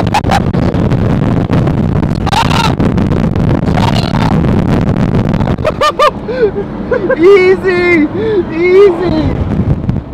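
A steady rush of wind on the microphone and a vehicle driving off across the salt, with a couple of brief shouts. About six seconds in, this gives way to loud, wordless voices inside a moving car.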